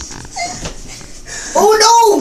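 A loud, high-pitched wordless cry about one and a half seconds in, its pitch rising and then falling.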